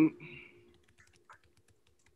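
Faint, irregular clicks of typing on a computer keyboard, just after the tail of a spoken word, over a faint steady hum.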